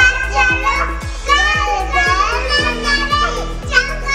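Young children's voices singing a children's song over music with a steady beat.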